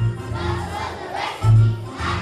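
A large group of young children singing loudly together over musical accompaniment. A deep bass note pulses about once every second and a half.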